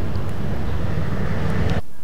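Outdoor street noise: a steady low rumble of city traffic, which cuts off suddenly near the end.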